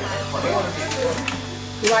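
Background music with long, held bass notes under faint talk.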